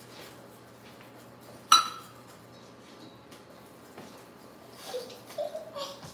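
A metal measuring cup knocks once against a stainless steel mixing bowl a little under two seconds in, a sharp clink that rings briefly.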